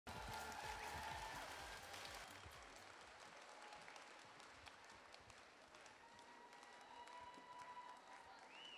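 Faint audience applause, a spatter of many hands clapping, loudest in the first couple of seconds and then dying away.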